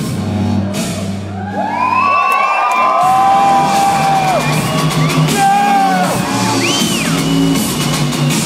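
Loud live electronic music through a concert hall's sound system, with the audience whooping and yelling over it from about a second and a half in. The deep bass cuts out for about a second near two seconds in, then comes back.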